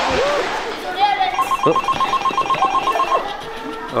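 A telephone ringing with a rapid trill, starting about a second in and lasting about two seconds, after a person's voice in the first second.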